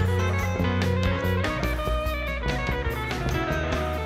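Live rock band playing an instrumental passage without vocals: electric guitars over sustained bass notes and a drum kit with repeated cymbal strokes.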